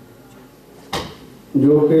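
A short, sharp knock just under a second in, then a man's voice over a microphone and PA from about halfway through, drawing out long, level-pitched syllables.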